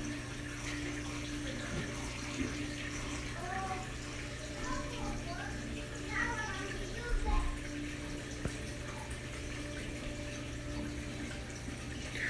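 Steady low hum and running water of a reef aquarium's circulation pumps. Faint voices sound in the background from about three and a half to seven and a half seconds in.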